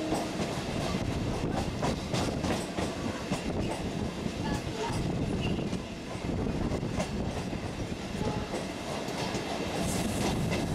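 Electric local train running at speed, heard from aboard at an open door: a steady rumble with wheels clicking irregularly over rail joints. A horn note stops right at the start.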